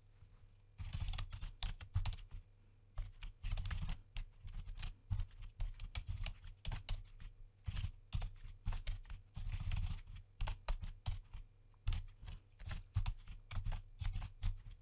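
Typing on a computer keyboard: quick, irregular runs of keystrokes with short pauses between them, starting about a second in.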